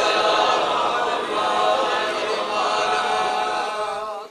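Unaccompanied devotional chanting: voices sing long, wavering melodic lines with no instruments.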